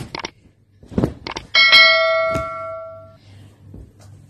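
A few sharp clicks, then a single bright bell ding about a second and a half in that rings and fades over about a second and a half. It is the notification-bell sound effect of a subscribe-button animation.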